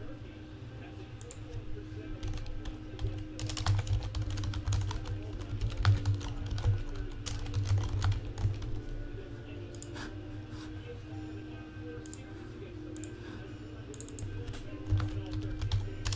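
Typing on a computer keyboard: quick runs of keystrokes from about three and a half to nine seconds in, then a few scattered keys, over a low steady hum.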